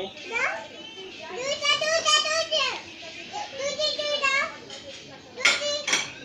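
A toddler's high-pitched voice making two long drawn-out calls, about a second in and again about three and a half seconds in, with a short loud outburst near the end.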